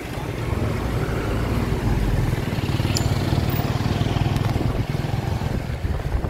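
A nearby motor vehicle engine running with a low, fast, even pulse, growing louder about half a second in and then holding steady.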